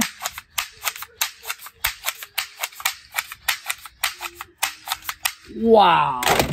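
Toy shotgun fired again and again: a rapid, irregular string of sharp cracks, about five or six a second, that stops about five seconds in.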